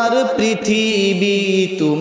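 A man's voice chanting a slow devotional verse into a microphone, holding long drawn-out notes, with the pitch stepping down near the end.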